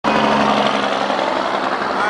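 A small motor running with a steady, unbroken hum.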